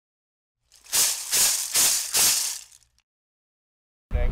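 A rattle shaken four times in an even rhythm, each shake a short hiss, then silence.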